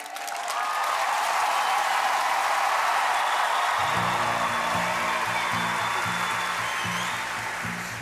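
Studio audience applauding and cheering as a choir's performance is about to begin, with low sustained instrumental music starting about four seconds in under the applause.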